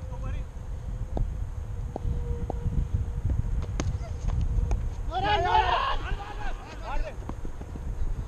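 Cricket players shouting loudly about five seconds in, with a shorter call near seven seconds, as the batsmen set off for a run. Wind rumbles on the microphone throughout, and there are a few faint sharp clicks in the first seconds.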